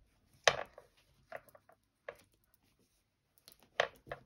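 Small sewing scissors snipping through woven fabric: a few short, sharp snips, the loudest about half a second in and another just before the end.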